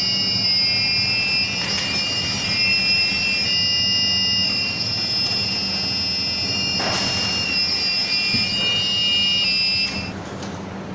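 A dancing robot's buzzer playing its electronic tune: high, shrill beeping tones that step from one pitch to another, cutting off suddenly at the end.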